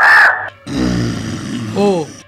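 A harsh crow caw in the first half-second, followed by a low rumbling growl lasting about a second; a voice starts near the end.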